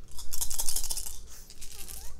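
Small plastic dice clicking and rattling together in a hand as they are gathered and shaken for a roll: a quick run of many light clicks that thins out about a second and a half in.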